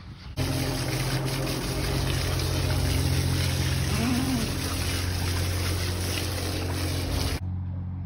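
Water from a garden hose spraying and splashing onto a lamb's wool and the concrete floor as the lamb is washed, with a steady low hum underneath. The sound cuts off abruptly shortly before the end, leaving a quieter hum.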